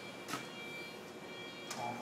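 Monarch 10EE lathe being switched on: a click about a third of a second in, another click near the end as a new steady hum sets in over a constant high-pitched machine whine.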